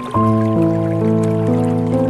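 Calm piano music, with a new chord just after the start and notes changing about every half second, over faint trickling and dripping water.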